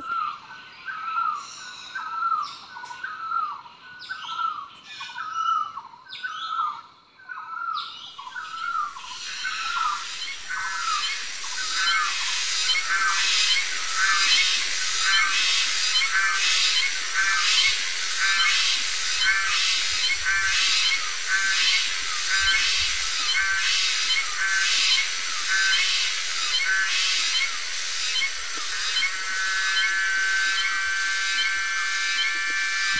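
Outdoor nature ambience: a bird calling over and over with short falling notes, then a dense, evenly pulsing high chorus that builds from about eight seconds in and holds.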